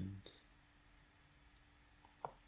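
Near silence: room tone with a faint steady hum, broken once near the start by a single computer mouse click.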